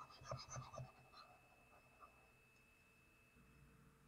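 Near silence with a few faint taps and scratches in the first second or so, as from a pen stylus on a drawing tablet, over a faint steady high tone.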